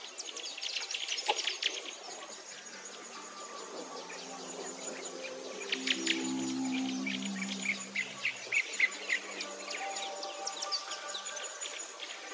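Many small birds chirping and twittering in quick calls, with a high thin trill that comes and goes about every two seconds and soft music low underneath.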